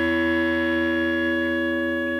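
Music: one long held chord of steady, sustained notes, slowly fading as the song closes.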